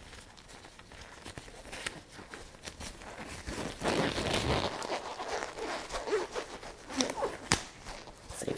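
Disposable gloves being pulled on, a crinkly rustle of thin glove material with scattered sharp clicks. It is busiest around the middle, with a couple of sharp snaps near the end.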